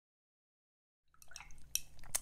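Dead silence for about the first half, then a few faint light clicks and taps over a low room hum, just before speech begins.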